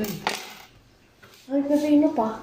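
A metal kitchen knife clinks as it is set down on a hard table, with a couple of sharp clicks right at the start. A short voice-like sound follows about a second and a half in.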